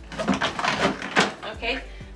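A hard-shell rolling suitcase being pushed into place between other suitcases, making a few quick knocks and a scrape.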